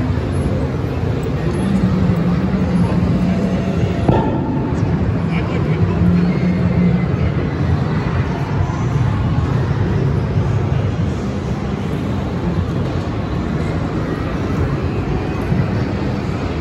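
Steady background hubbub of a busy convention hall: indistinct crowd voices over a low, constant drone.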